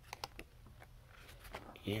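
Sheets of a craft paper pad being turned by hand: a few light clicks and rustles of paper, several close together early on.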